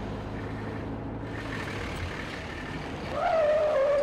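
A motor vehicle running steadily. About three seconds in, a loud, slightly wavering high tone sets in and holds for over a second.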